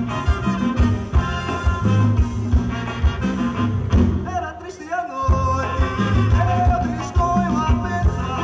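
Live band with a horn section of trombones, trumpet and saxophone over electric bass and drums, playing an upbeat, beat-driven groove. About four seconds in, the bass and drums drop out for about a second of horns and voice alone, then the full band comes back in.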